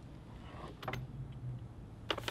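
A leather briefcase being handled on a desk: a soft rustle, then a light click just under a second in, quietly.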